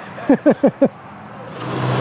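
A man's brief laugh, then a motor vehicle approaching on the street, its engine noise swelling over the last second with a steady low drone.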